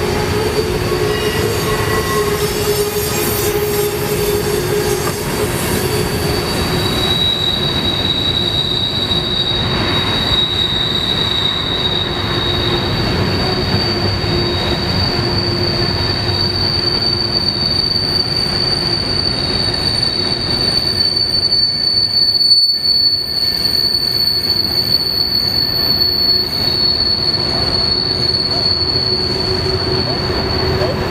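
Freight cars rolling past on a tight curve, their wheel flanges squealing in steady high-pitched tones over the continuous rumble of steel wheels on rail. A second squeal tone joins about seven seconds in and fades out after a while.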